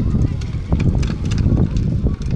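Indistinct voices of people talking nearby over a steady low rumble, with scattered short clicks and knocks close to the microphone.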